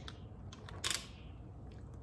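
Faint handling noise of a makeup product being picked up: a few light clicks and one short rustle about a second in.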